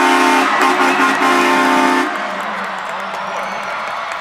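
Brass band chord blasted in a long, short, short, long rhythm for about two seconds, then cut off, leaving a fainter lower held note: a touchdown fanfare.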